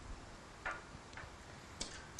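Quiet room tone with a few faint, irregular clicks while an on-air phone line to a caller stays silent: the caller is not answering and the call has dropped.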